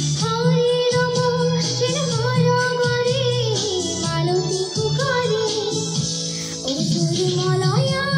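A girl singing into a handheld microphone over backing music, holding long notes with a wavering pitch.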